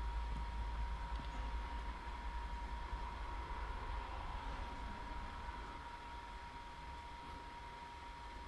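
Low, steady background noise of the recording: a low hum with faint hiss and a thin steady whine, and no distinct events, slowly fading a little.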